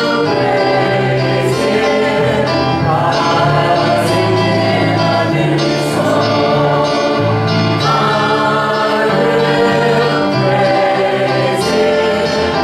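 A group of voices singing a gospel worship song together, with instrumental accompaniment underneath, loud and steady.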